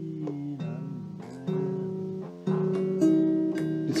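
Guitar playing slow chords, each strummed and left to ring, with a new chord every second or so.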